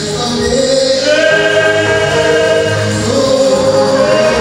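Gospel praise song sung by voices together, slow and sustained, with long held notes that slide from one pitch to the next.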